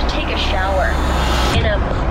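Steady low drone of an airliner cabin in flight, under a woman's excited speech. A hiss over the top cuts off suddenly about one and a half seconds in.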